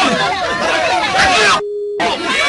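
Several voices shouting over each other, cut off abruptly near the end by a single steady electronic beep tone lasting under half a second.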